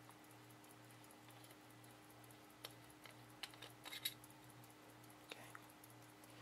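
Faint, irregular small metal clicks and scrapes as the threaded back cover of a 1904 Elgin gold-filled pocket watch is unscrewed and lifted off, the loudest click about four seconds in. A low steady hum sits underneath.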